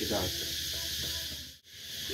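A steady high-pitched hiss with a faint voice at the start. The sound drops out for a moment shortly before the end.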